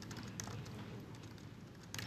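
Low room tone with faint, irregular soft clicks scattered through it.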